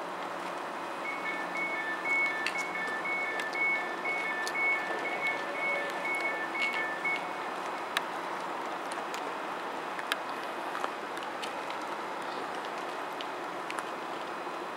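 Stadler FLIRT class 755 train sounding door warning beeps, two alternating tones about twice a second for some six seconds, over the steady hum of the train standing at the platform. A few sharp clicks follow near the middle.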